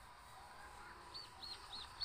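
A bird chirping faintly: four quick notes, each rising and falling, in the second half, about a quarter second apart.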